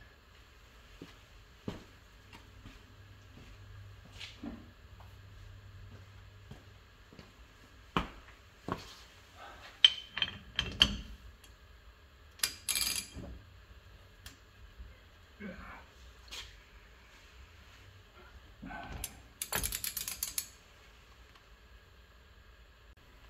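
Socket wrench working the rear axle castle nut of a 1979 VW Super Beetle, held by a hub tool bolted to the brake drum: scattered metallic clicks and clanks as the nut is tightened. A denser run of clicking comes near the end.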